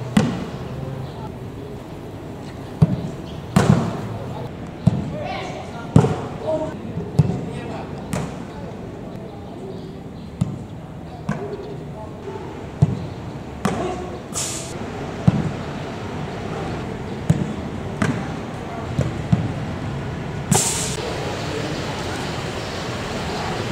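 Footballs being kicked on a grass pitch during a training drill: a string of sharp thuds every second or two, with players' voices calling out.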